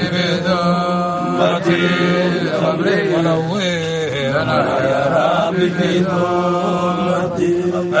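Men chanting an Arabic devotional poem: a voice sings long, winding melodic lines over a steady low held tone.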